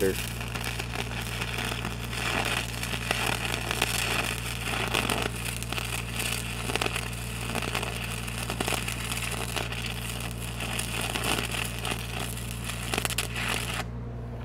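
Stick-welding arc crackling steadily as a 5/32 8010 cellulose rod burns on magnetized steel pipe, over the steady low hum of an engine-driven Lincoln SAE-300 welder. The arc breaks off at the very end while the welder keeps running.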